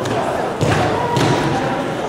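Thuds from many karateka training in pairs on foam mats, their footwork and strikes landing, two sharper impacts about half a second and a second in. The impacts echo in a large hall over a background of voices.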